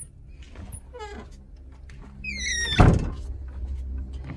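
A door squeaking on its hinges, squeaking again, then shutting with a loud thud about three seconds in.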